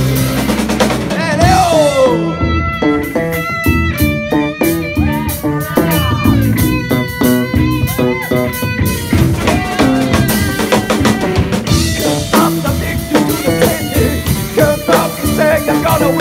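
A live rock band playing a song loudly: electric guitar, bass guitar and drum kit.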